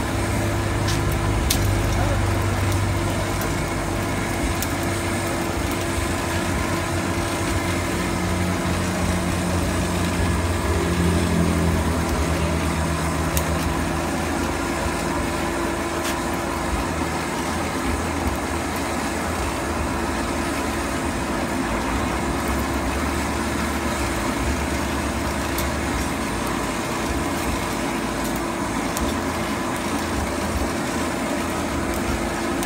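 Electric air blower feeding a charcoal blacksmith's forge, running steadily with a constant motor hum over the rush of air through the fire.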